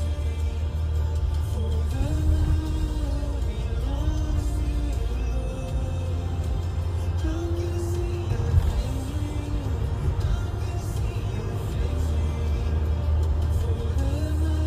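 Background music: a melody of held notes that slide between pitches over a deep, steady bass.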